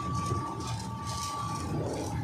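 Oil mill machinery running steadily, with a low rumble and a steady high whine, as a belt conveyor carries fresh oil cake.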